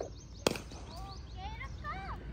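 A cricket ball impact: one sharp knock about half a second in.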